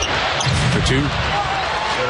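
Live basketball game sound in an arena: a steady crowd din with basketball bounces and short high sneaker squeaks on the hardwood court.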